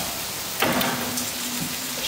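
Steady sizzling hiss from the hot, open cast-iron plates of a waffle iron. About half a second in comes a short knock, followed by a low steady hum lasting about a second.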